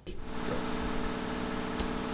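Steady mechanical hum of shop background machinery, an even, buzzy drone with a faint click near the end.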